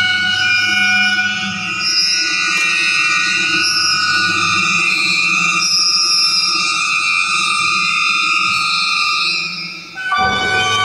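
Contemporary chamber ensemble with live electronics holding several sustained high tones that stack into a dense, steady chord, fading briefly near the end.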